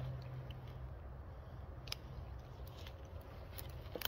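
Faint chewing on a strip of freshly peeled black willow bark: a few soft, scattered crunchy clicks over a low rumble that fades about a second in.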